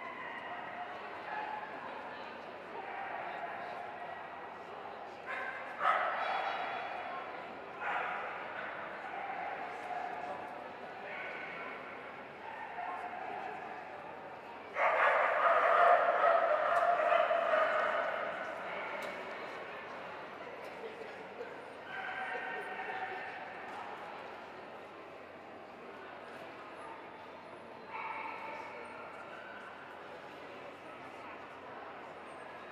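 Hounds baying and howling in bouts of a few seconds each, the loudest about halfway through, over a murmur of crowd voices in a large hall.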